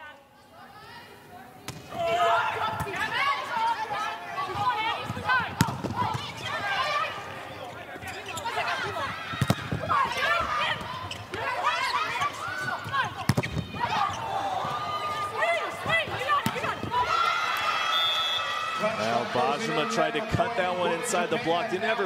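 Indoor volleyball rally in an arena: sharp smacks of hands on the ball come every few seconds among players' calls and shoe squeaks on the court floor. Music with steady held notes comes in over the last few seconds.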